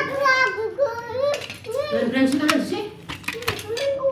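A child talking in a small room in high-pitched, broken phrases. Several sharp clicks cut in about a second and a half in and again after three seconds, from hands handling the metal fixing unit.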